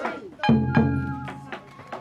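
Japanese festival music (matsuri-bayashi): drum strikes that ring and fade, one at the start and two more about half a second later, over a steady held flute note.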